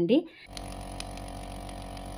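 Nebulizer air compressor switched on and running with a steady hum and a fast, even pulse, starting about half a second in. It is pushing air through the tubing to blow out leftover water droplets.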